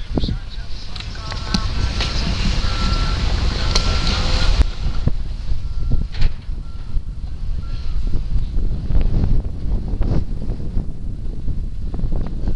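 A heavy work vehicle's reversing alarm beeping repeatedly at one steady pitch, stopping about eight seconds in, over wind rumbling on the microphone.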